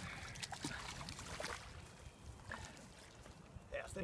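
Faint, irregular sloshing and scuffing as a large snagged paddlefish is dragged through shallow muddy water.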